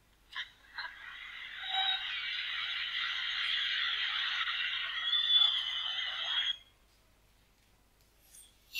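Sound effect on an animated cartoon's soundtrack. After a short click, a dense, steady noise starts about a second in, lasts about five and a half seconds, and cuts off suddenly.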